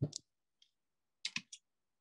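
A few short, faint clicks over a video-call line: a pair at the start, then three in quick succession a little after one second.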